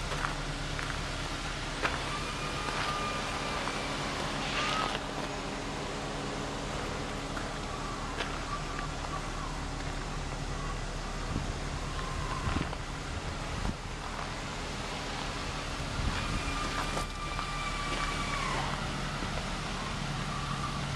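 Steady low hum of an idling car engine, with faint high whistling tones coming and going and a few light clicks.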